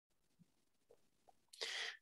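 A pause in near silence, then, about a second and a half in, a short sharp intake of breath through the nose or mouth, quieter than the speech around it.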